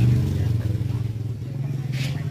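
Motorcycle engine running close by, a steady low hum that eases off slightly about a second in.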